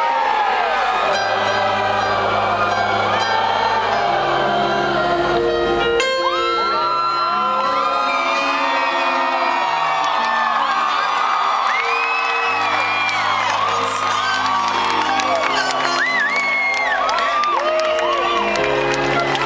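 Grand piano playing slow, held chords live on stage, with a large crowd cheering and whooping over it; the high whoops rise and fall again and again.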